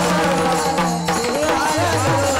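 Varkari devotional bhajan: a group of men singing, accompanied by pakhawaj barrel drums and small hand cymbals (taal) keeping the rhythm.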